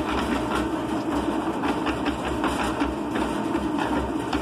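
Concrete mixer running, its drum turning a wet load of water, lime and additives for plaster mortar: a steady mechanical drone with a light, irregular rattle.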